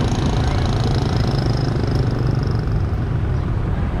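Street traffic with motorbike engines running, a steady low hum.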